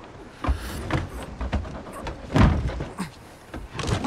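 A wooden barrel being grabbed and shifted: a series of knocks and thuds, the heaviest about two and a half seconds in.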